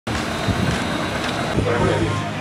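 Indistinct voices over steady outdoor background noise, a dense even din with no single clear source.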